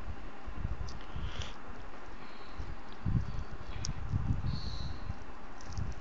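Handling noise: a low, uneven rumble from the camera being held and moved close to the hands, with faint rustles and a single light click about four seconds in.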